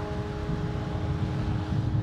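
An electric guitar chord held and ringing out through the amplifier, with no drums, over a low, uneven rumble of wind on the microphone.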